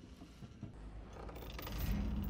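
Soundtrack of an animated episode: a faint low rumble that swells steadily, with a low held tone coming in near the end.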